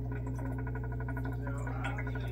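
Small electric motor of a rotating acid-bath rig humming steadily, with a rapid, even ticking of about ten ticks a second.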